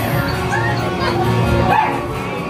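Haunted-maze soundtrack music with short dog-like barks and snarls played as werewolf sound effects.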